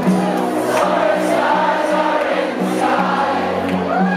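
Irish rock band playing live through a PA, with many voices singing together over guitars, drums and sustained low notes, recorded from among the audience.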